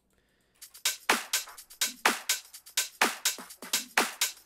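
Electronic drum-machine percussion playing back from a DAW project: sharp, bright hits about four a second in a steady rhythm, starting about half a second in, with no bass or melody heard alongside.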